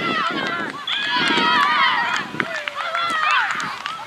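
Several high-pitched voices shouting and calling over one another, with no clear words, loudest from about a second in.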